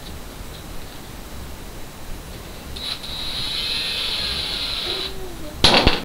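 Electronic stud finder giving a steady, high-pitched beep for about two seconds, starting about three seconds in, which signals that a stud has been found. Near the end there is a single sharp knock, the loudest sound.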